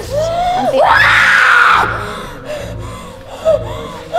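A young woman screaming in a possession fit: a rising cry about a second in breaks into one long loud scream, with a shorter cry near the end. A low pulsing beat runs underneath.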